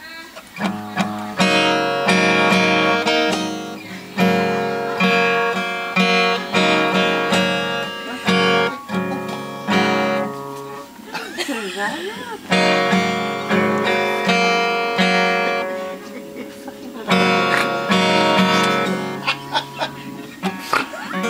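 Steel-string acoustic guitar strummed in repeated chords at a steady rhythm, stopping briefly about halfway through and again later before resuming.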